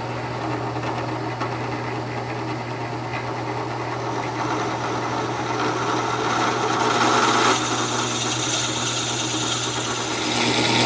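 Drill press running steadily with a low motor hum. Its bit bores down into a round mahogany pen blank, and the cutting noise grows louder from about four seconds in.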